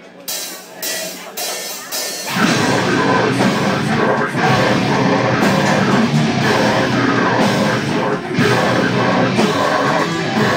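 Deathcore band playing live: a few sharp hits, then about two seconds in the full band comes in loud with drums, distorted guitars and bass as the song starts.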